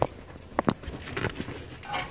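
Two short knocks about half a second in, with faint scuffing, as a person clambers down through a narrow crevice between boulders.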